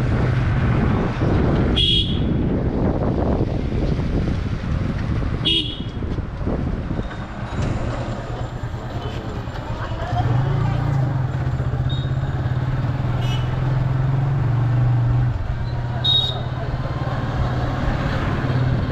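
Motorcycle engine running steadily with wind and road noise as it rides, the engine note louder for a few seconds past the middle. Short vehicle-horn toots sound about five times.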